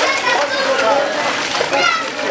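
High-pitched children's voices calling and chattering over the splashing of a horse-drawn cart's wheels moving through floodwater.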